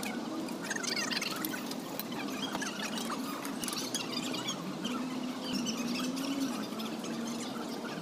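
Street-stall ambience: a steady low hum under a hiss, with many short high chirps and squeaks scattered throughout.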